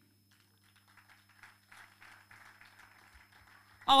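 Faint, scattered applause from a congregation, over a steady low electrical hum.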